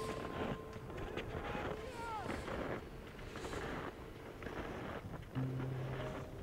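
Wind noise rushing on the microphone of a handheld camera carried over snow, with a faint, distant gliding call about two seconds in. Low, steady music notes come in near the end.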